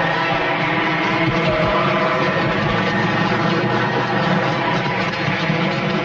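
Motorcycle engines running steadily at speed, a continuous loud drone.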